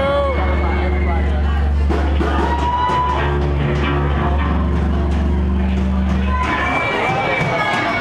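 Loud live band music through a PA, with a deep sustained bass note and held vocal or instrument lines. The bass cuts off about six and a half seconds in as the song ends, leaving crowd noise and voices.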